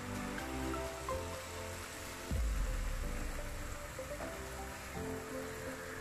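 Background music over the steady sizzle of jalebi batter frying in hot oil, with a low thump about two seconds in.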